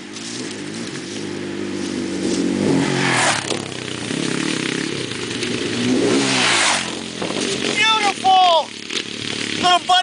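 Off-road vehicle engine revving as it approaches, its pitch rising and falling through the gears, with two louder surges. A person calls out near the end.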